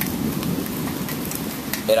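Steady rain falling, a constant hiss with scattered sharp drop hits.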